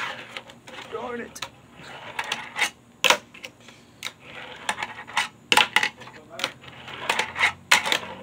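Tech Deck fingerboard clacking on a wooden tabletop: a dozen or so sharp, irregular clicks as the board is popped, flipped and landed under the fingers.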